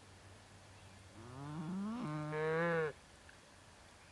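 A cow mooing once, a single call nearly two seconds long that rises in pitch, then holds steady and stops abruptly.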